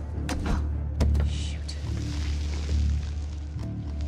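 Film score with a low pulsing bass, laid under sharp metallic clicks about a second in and a hissing mechanical whirr of robot sound effects.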